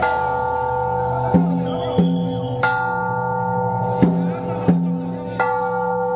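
Hand gongs in a temple-procession percussion group, struck in a slow repeating pattern. A bright, long-ringing gong stroke comes about every two and a half seconds, three in all, with pairs of shorter, lower strokes in between.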